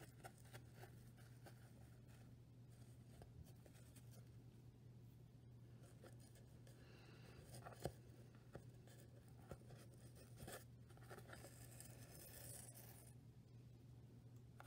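Faint scratching and rustling of yarn and a needle being drawn over and under the warp strings of a cardboard loom, with a few light clicks, over a low steady hum.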